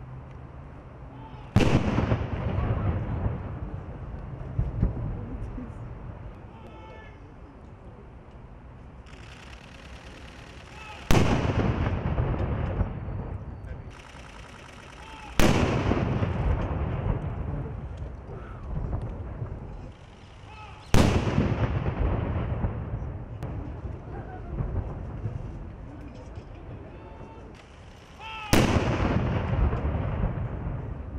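Ceremonial gun salute from Royal Horse Artillery 13-pounder field guns firing blanks: five cannon shots at uneven intervals of a few seconds. Each is a sharp blast followed by a long rolling echo that dies away over several seconds.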